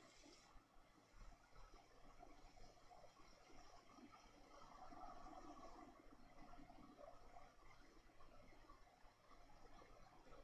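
Near silence: only a faint, uneven hiss.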